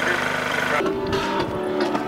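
A steady engine-like hum with a thin high whine, cut off abruptly about a second in as music starts.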